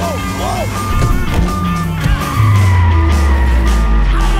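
Car-chase film soundtrack: a Subaru Impreza WRX's engine running hard under rock music. Over the second half a loud, deep engine note slides down in pitch.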